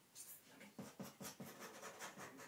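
Scratching on a cardboard box: a quick run of short scratching strokes, about eight a second, beginning a little under a second in.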